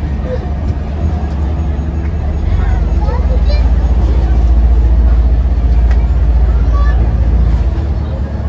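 Ferry's engine running with a deep, steady rumble that swells from about two and a half seconds in and eases near the end as the ferry comes alongside the quay. Voices chatter in the background.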